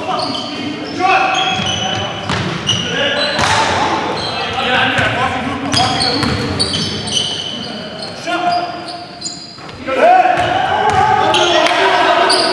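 Basketball game sounds in a large gym: a ball dribbled on the hardwood floor, short sneaker squeaks, and players' voices calling out, with a louder shout about ten seconds in.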